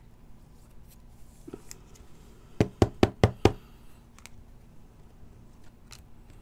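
Trading cards tapped against the tabletop: five quick knocks in under a second, about halfway through, with faint handling ticks before them.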